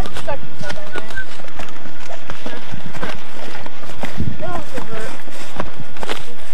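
Footsteps and rustling of hikers pushing through low shrubs, an irregular run of short brushing and stepping sounds, with a few brief indistinct voices.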